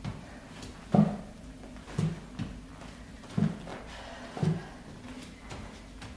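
Feet landing on an exercise mat over a wooden floor during alternating lunges, a dull thud roughly once a second.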